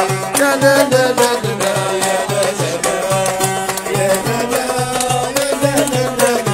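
Live Kabyle folk music: an Algerian mandole is plucked over a hand drum that keeps a steady low beat, about three strokes a second, while the singer's voice carries the melody.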